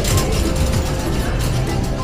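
Shopping trolley rattling as it is pushed along, its wheels and wire frame giving a rapid, continuous clatter.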